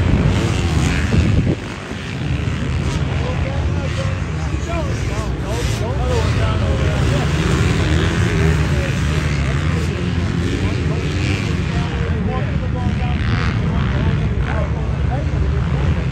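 Motocross dirt bikes racing around the track at a distance: a steady low rumble of engines with notes that rise and fall as riders rev through corners and jumps, and a brief dip in level about one and a half seconds in.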